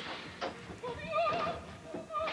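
Opera singing: a high voice holding long notes with a wide vibrato.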